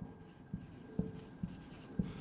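Marker pen writing on a whiteboard: a few faint strokes and light ticks as letters are written.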